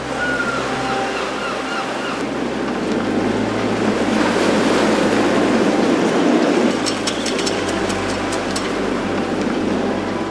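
Sea surf breaking and washing up a beach, a continuous rush of water that swells louder a few seconds in.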